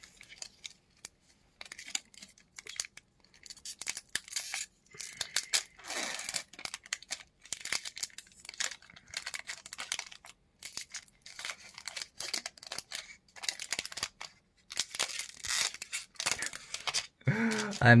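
Foil wrapper of a Magic: The Gathering Double Masters booster pack being torn and crinkled by hand, in many short, irregular bursts, as the pack resists being opened.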